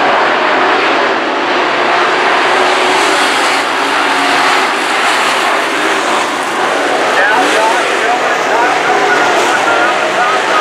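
A pack of dirt modified race cars running at racing speed, their V8 engines blending into one loud, steady sound. Individual engine notes rise and fall as cars go by.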